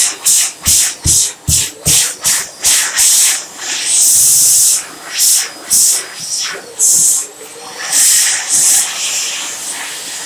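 Warner Howard Airforce hand dryer blowing in short blasts of high-pitched hissing air, cutting in and out many times in quick succession, with a few longer blasts about four and eight seconds in.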